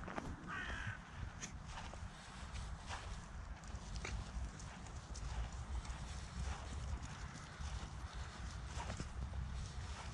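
Footsteps walking through wet grass, soft irregular steps over a steady low rumble. A brief call sounds about half a second in.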